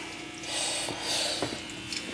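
Glass of Coke fizzing with a soft hiss as a spoonful of sugar is tipped into it. The sugar sets the cola foaming, and the hiss swells about half a second in.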